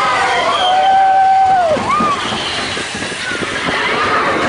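Riders on the Big Thunder Mountain Railroad mine-train roller coaster yelling over the rumble of the train running on its track. There is one long held yell that falls away at its end, then a shorter cry that rises and falls.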